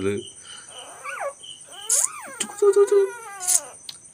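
Newborn puppy crying in thin, high squeals: a short one about a second in, another about two seconds in, then a longer wavering cry near the end.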